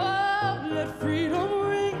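A choir singing with held, gliding notes over band accompaniment with an evenly pulsing bass.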